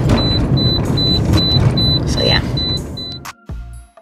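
A car's high-pitched chime beeping quickly, about four times a second, over the low rumble of the car. It stops about three seconds in and soft music with a low pulsing beat takes over.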